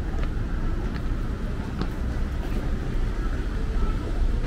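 City street ambience: a steady low rumble of road traffic, with a few faint clicks and people's voices in the background.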